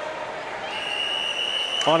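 Referee's whistle blown in one long, steady blast lasting about a second, over crowd chatter. This is the long whistle that calls swimmers up onto the starting blocks.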